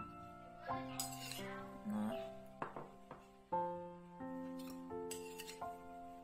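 Background music with held notes, and a few light clinks of a spoon against a ceramic plate as soy sauce is spooned over tofu.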